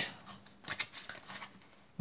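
Playing cards being spread and pushed from hand to hand through the deck, with a few faint flicks and slides of card against card about a second in.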